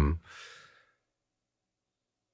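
A man's word trails off into a short, faint breathy exhale, then dead silence for the rest of the moment.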